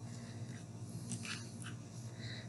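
Faint short scrapes of closed scissors sliding string-art string up along the pins, a few soft strokes around the middle, over a low steady hum.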